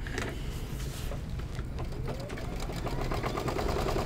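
Brother Luminaire Innov-is XP2 embroidery machine stitching out the appliqué feet: a fast, steady run of needle strokes, with a faint rising whine in the middle.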